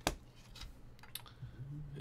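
Hard plastic graded-card slabs clicking against each other as they are handled: one sharp click at the start, then a few faint clicks.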